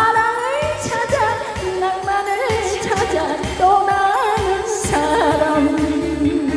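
A woman singing a Korean trot song into a microphone over amplified accompaniment with a steady beat, her sustained notes wavering with vibrato.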